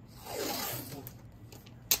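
Painter's tape pulled off the roll: a short rasping rip lasting under a second, then a sharp click near the end.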